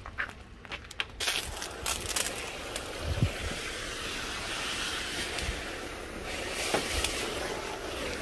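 Steady hiss of a low-pressure water spray from a 40-degree nozzle on a small pump-fed hose, starting about a second in and hitting a car's fender and the pavement. The pump puts out no more than about 45 psi, and the owner finds the spray too weak for this nozzle's orifice.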